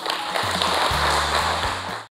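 An audience applauding, with background music and its low bass notes underneath.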